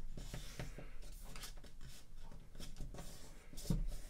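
A sheet of paper being folded down and creased by hand on a wooden table: irregular rustling and rubbing strokes as the fingers run along the fold. A brief louder low sound comes near the end.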